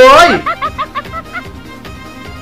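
A short snickering laugh: a quick run of about half a dozen short pitched 'heh' notes that fade out, over quiet background music.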